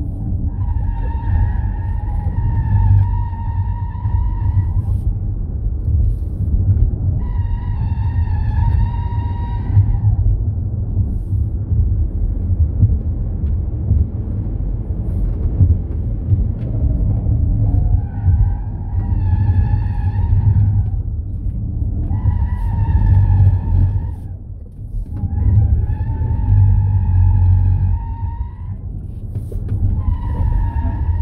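Tyres of a Ford Mustang Mach-E GT squealing under hard cornering on a race track, in five spells of two to four seconds each, each a steady high-pitched squeal. Under them runs a steady low rumble of road and wind noise heard from inside the cabin.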